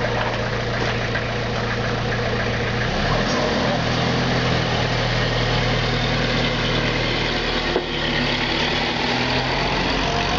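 A ground fountain firecracker burning with a steady, even hiss of spraying sparks, over a steady low hum, with one short pop near the end.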